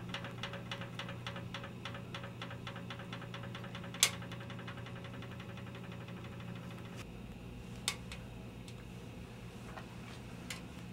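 A steady low hum under a rapid, regular ticking of about four ticks a second that stops about seven seconds in. A single sharp click about four seconds in is the loudest sound, with a fainter click near eight seconds.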